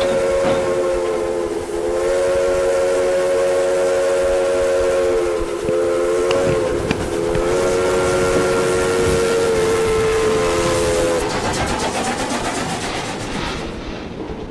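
Steam locomotive's three-note chime whistle blowing the grade-crossing signal, long, long, short, long, as the train approaches. The whistle stops about 11 seconds in and the locomotive and train run past close by with a rapid rhythmic clatter.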